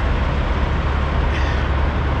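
Steady low diesel rumble of semi trucks idling in a parking lot.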